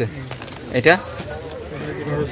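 One short spoken word from a man, over a fainter background in which a bird is calling.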